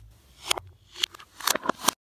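Metal clicks from the tab of an aluminium drink can, played in reverse: about five sharp clicks, each preceded by a short swelling lead-in, the last three close together near the end, before the sound cuts off suddenly.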